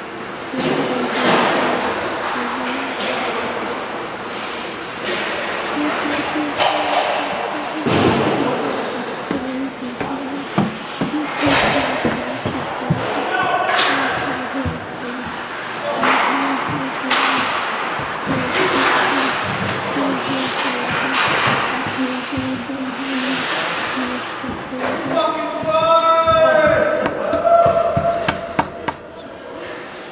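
Ice hockey rink ambience during play: repeated knocks and slams of pucks, sticks and players against the boards and glass, with voices and music echoing in the arena.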